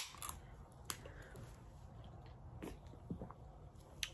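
Faint eating sounds: quiet chewing with a few soft, scattered clicks from handling food and a small sauce cup.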